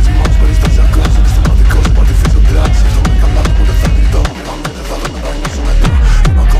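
Techno DJ mix: a steady electronic kick-drum beat over heavy bass, with hi-hats and synth parts. About four seconds in the deepest bass drops out and the mix thins, then the full bass comes back near the end.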